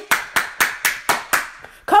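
One person clapping her hands in a steady rhythm, about four claps a second, six or so in all, the claps growing fainter before her voice returns near the end.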